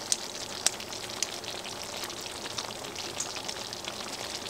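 Food frying in oil in a pan, a steady sizzle with many small crackles and a few sharper pops in the first second or so.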